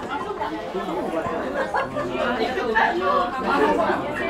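Background chatter of other people in a restaurant: several voices talking indistinctly and overlapping, with no single voice standing out.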